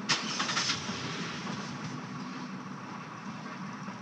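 Car engine running with a steady low hum, with a few brief rustles or clicks in the first second.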